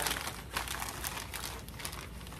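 A sheet of paper crinkling and rustling in irregular crackles as it is folded over and wrapped around a candle jar by hand.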